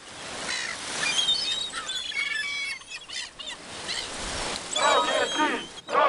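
Outdoor field recording: birds chirp over a steady hiss, then loud repeated shouting voices start near the end, the sound of a street protest against Russian troops in the 1990s.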